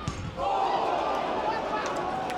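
A football struck with a dull thud at the very start, then voices calling out on the pitch.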